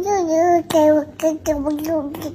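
A toddler babbling gibberish into a phone in a high, sing-song voice, as if holding an adult conversation: one long wavering syllable, then a run of short ones.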